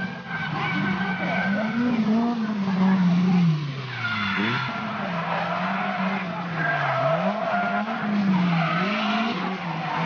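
1/10-scale rear-wheel-drive RC drift cars sliding in tandem. The electric motors' note rises and falls with the throttle and dips sharply about halfway through, over the hiss of the hard tyres sliding on asphalt.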